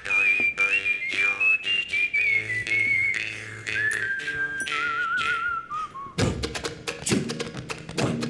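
Whistled melody line into a microphone over soft low sustained notes, gliding and stepping downward in pitch with a wavering vibrato and ending about six seconds in. It is followed by a louder burst of full-band music full of quick percussive clicks and knocks.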